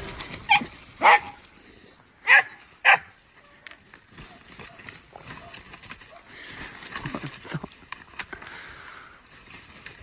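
A dog barking four short times in the first three seconds, in two quick pairs, then only faint scattered sounds.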